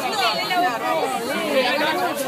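Several people's voices talking over one another in unclear chatter.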